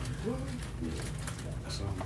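Faint, indistinct voices of people talking quietly, with no words made out, over a steady low room hum.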